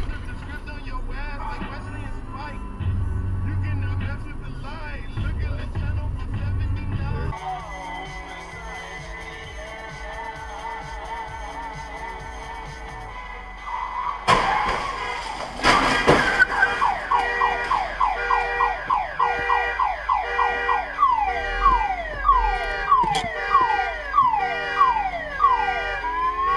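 Low in-car road rumble for the first several seconds, then music with held tones. About fourteen and sixteen seconds in come two sharp impacts, with the dashcam catching a car collision. After them a falling electronic tone repeats over and over, about one and a half times a second.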